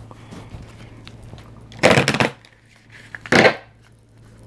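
Two short rustling scrapes of cards being slid and handled on a table, about a second and a half apart, over a low steady hum.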